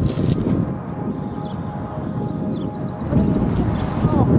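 Wind buffeting the camera's microphone, a steady low rumble with no speech over it.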